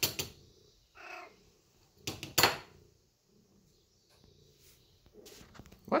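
Tortoiseshell cat meowing a few times in a hoarse, raspy voice, the loudest and roughest call about two seconds in.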